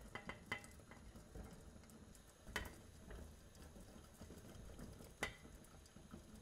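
Near silence: faint kitchen room tone with a few soft clicks, one about two and a half seconds in and another near the end.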